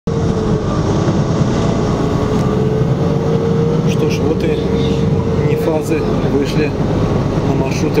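Steady low engine and road noise inside a moving NefAZ-5299-40-52 city bus, with a steady whine that stops about five and a half seconds in. A voice is heard over it in the second half.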